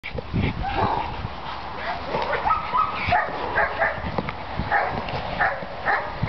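A dog barking repeatedly during bite-work (protection) training, short sharp barks at roughly two a second.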